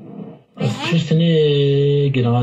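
A person's voice comes in about half a second in and holds one long, loud note at a nearly steady pitch.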